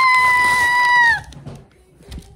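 A woman's high-pitched squeal of excitement, held on one steady note for over a second, then dipping and cutting off.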